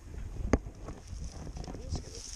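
Handling of a wire-mesh minnow trap being opened and emptied onto a dirt trail: one sharp click about half a second in, then small ticks and rustles. Faint voices near the end.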